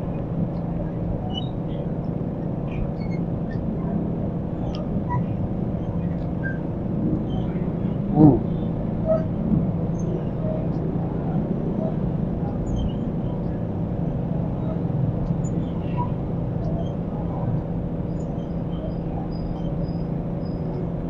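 Steady hum of nearby street traffic with a constant low engine drone, faint high chirps scattered through it, and one short louder wavering sound about eight seconds in.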